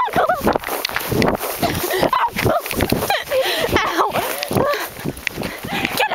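A person laughing and making breathless wordless cries while running through long grass, with uneven footfalls and grass swishing against the microphone.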